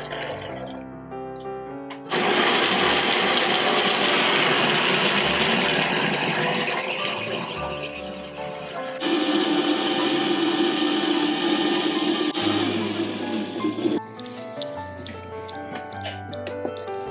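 High-powered countertop blender grinding soaked soybeans with water into a slurry for soy milk. It starts abruptly about two seconds in, runs loudly and steadily for about twelve seconds with a shift in its pitch partway through, and stops suddenly.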